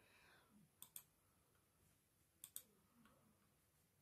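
Faint computer mouse clicks over near silence: two quick double ticks, each a button press and release, about a second in and again about two and a half seconds in.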